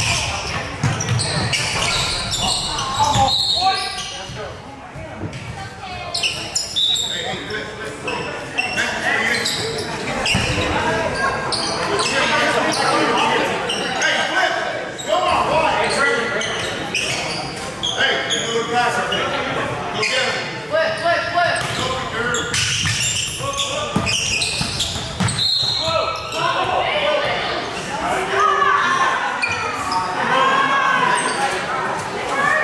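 Basketball bouncing on a hardwood gym floor, repeated sharp impacts throughout, amid voices of players and spectators, all echoing in a large gymnasium.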